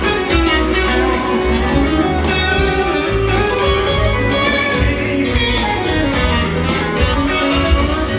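Live band music with no singing: an electric guitar is played to the fore over a steady bass and beat.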